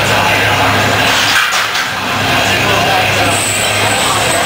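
Voices over loud, dense gym noise, with a steady low hum underneath.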